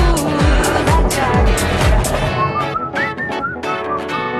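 Pop song with sung vocals over a pounding kick drum. A bit over two seconds in, the drums and bass drop out and a whistled melody over guitar begins.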